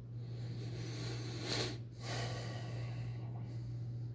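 A close, noisy breath, a long sniff in and then a breath out with a short break between, over a steady low hum.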